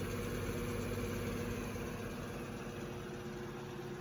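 Revox A77 MkIV reel-to-reel tape deck spooling tape in fast rewind: a steady, nice and quiet hum from the reel motors and transport, with no rattles.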